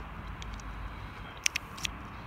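Two short, sharp metallic clicks, under half a second apart, as a key is slid into a VW T4 door lock cylinder with its wafer pins being re-arranged, over a steady low background rumble.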